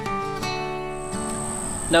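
Background acoustic guitar music, single plucked notes ringing out. About a second in, a steady high-pitched insect trill, like a cricket, joins it.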